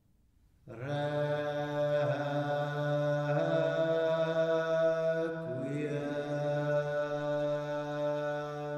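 Male vocal ensemble singing slow, sustained Renaissance polyphony from the Introit of a Requiem, entering after a brief silence about a second in. The voices hold long chords over a low sustained note, shifting chord a few times, with a short breath-like break around the middle.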